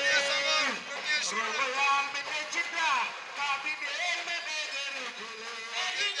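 Voices singing or chanting over music, with held notes and pitches that glide up and down, one falling sharply about three seconds in.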